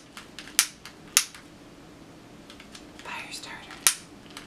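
Long-neck butane utility lighter being clicked repeatedly, its ignition giving sharp clicks about half a second in, just after a second and near the end, with fainter ticks between, as it fails to catch.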